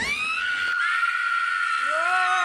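A woman screaming: one long, high-pitched scream held at a steady pitch. Near the end a second, lower cry comes in, rising in pitch.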